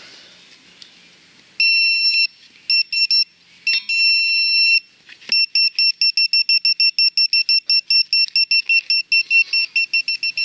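Bounty Hunter handheld pinpointer beeping as its probe is worked through loose soil in a dug hole. It gives a long high tone, a few short beeps and another long tone, then from about five seconds in a steady rapid beeping at about six a second: the probe is close to a metal target still in the soil.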